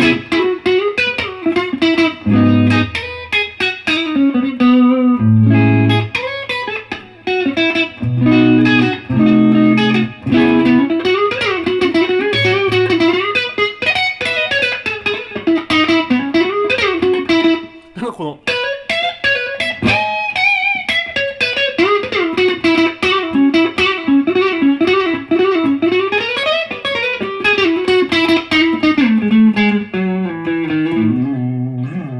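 Electric guitar played through a Beyond Tube Pre Amp, a tube preamp pedal, in a clean single-note lead line with string bends and vibrato and a few chords. There is a short break about 18 seconds in.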